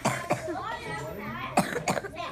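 Several short coughs, two close together near the start and two near the end, over indistinct voices in a room.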